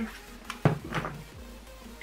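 A few light knocks and clicks of makeup items being handled, the sharpest about two-thirds of a second in, over quiet background music.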